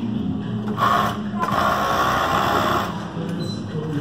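Industrial sewing machines running steadily, with a louder, brighter burst of stitching about a second in.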